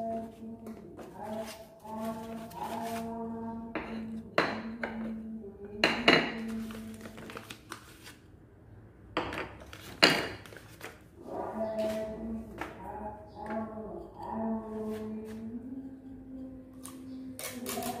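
Eyeglass lens and frame being handled by hand, with a few sharp clicks and clinks of hard plastic or glass, the loudest about four, six and ten seconds in.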